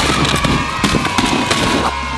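Cardboard boxes being shoved and tumbling: a dense, continuous run of hollow knocks and thuds.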